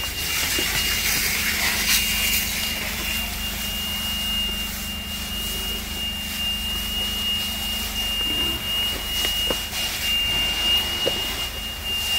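A steady rushing noise with a continuous high-pitched tone held over it, amid a burnt-out building still being worked by firefighters. A low hum underneath stops about eight seconds in.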